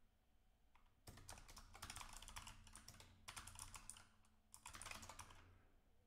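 Faint computer keyboard typing in about four quick bursts of keystrokes, starting about a second in and stopping shortly before the end.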